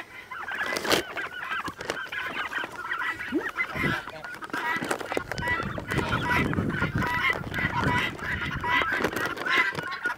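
A mixed flock of farm poultry calling over one another at feeding time: a continuous chatter of short calls with geese honking among them.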